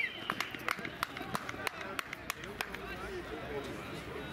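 Quiet field sound of young footballers cheering and shouting after a goal, with many scattered sharp taps from claps and running steps.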